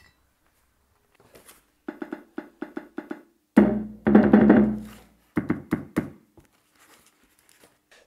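Sampled percussion sounds triggered by tapping the capacitive key pads of a cardboard recorder built with the KontinuumLAB Instrument Kit (KLIK), set to act as a capacitive percussion set: a quick run of short hits, then a deeper, longer-ringing drum sound about three and a half seconds in, then a few more short hits.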